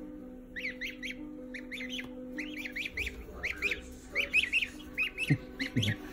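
Baby goslings peeping: short, high, falling peeps in quick clusters of two or three, repeated throughout, over a faint steady hum.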